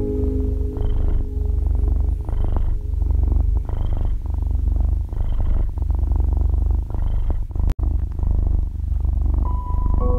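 A cat purring in close, steady breaths, its rumble swelling about every second and a half, with soft piano tones faintly underneath. The sound drops out for an instant about three-quarters of the way through.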